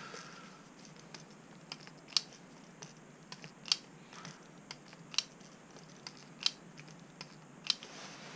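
Plastic hand pump on a gear-oil bottle being stroked to fill an outboard's lower-unit gear case. It gives a sharp click about every second and a half, with fainter ticks between.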